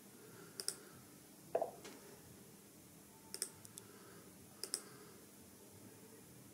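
A few quiet, sharp clicks, mostly in pairs, from clicking on a laptop while an app starts and connects. There is one duller thump about one and a half seconds in.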